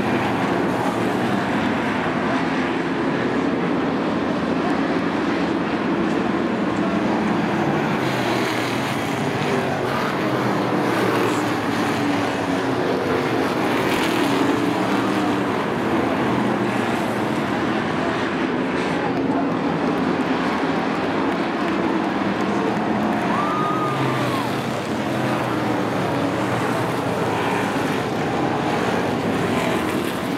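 A pack of sportsman stock cars racing flat out on a paved short oval: several engines running together in a loud, steady drone whose pitch wavers as the cars pass.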